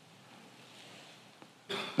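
Faint room tone during a pause in speech, then near the end a short throat-clearing sound just before a man's voice comes back in.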